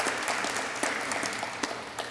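Audience applauding, the clapping gradually dying away.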